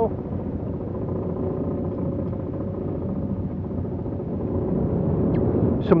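Steady low rumble of a yacht under way at sea, with water rushing along the hull and a faint steady hum underneath.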